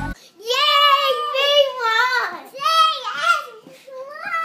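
A very high-pitched voice singing or speaking in about four drawn-out phrases, its pitch wavering up and down, with short gaps between them. Chiming background music cuts off just as it begins.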